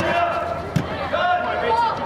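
Indistinct overlapping voices of players and spectators calling out during a youth soccer game. About three-quarters of a second in comes one sharp thud of a soccer ball being kicked.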